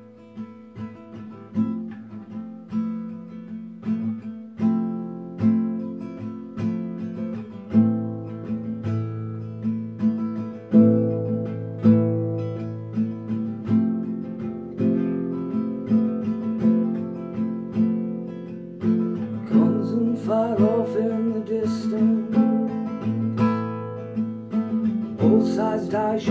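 Nylon-string classical guitar playing slow chords, strummed and picked one after another, as the opening of a song.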